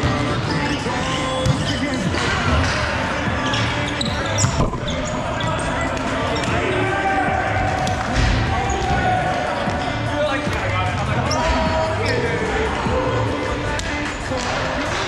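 Volleyball being struck and bouncing on the court, a few sharp hits standing out, amid players' voices and music playing in a large, echoing hall.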